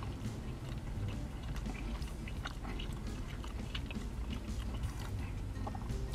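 Close-up chewing of a mouthful of thin-crust pizza: scattered soft mouth clicks and smacks over a low steady hum.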